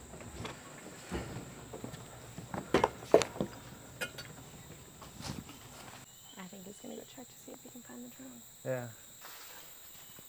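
Footsteps and knocks as people climb out of a boat onto a jetty, loudest around three seconds in, over a steady high-pitched drone of jungle insects. After about six seconds the steps die down and faint distant voices are heard.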